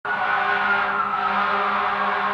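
Fire engine siren sounding, its high tone slowly falling in pitch, over a steady low hum.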